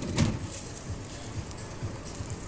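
A short knock just after the start, then faint low thuds and shuffling as a man climbs out through the side door of a police van.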